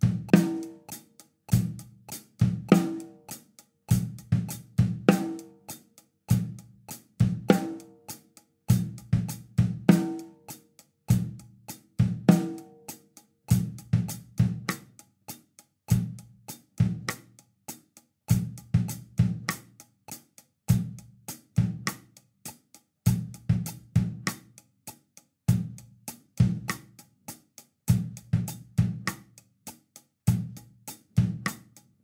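Drum kit playing a steady rock groove: eighth-note hi-hat over a syncopated bass-drum figure with the snare on beat three, two nearly identical one-bar patterns alternating at tempo.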